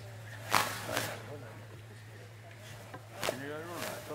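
Sharp knocks at the lectern, two about half a second apart near the start and another about three seconds in, over a steady electrical hum from the sound system. A short murmured voice follows near the end.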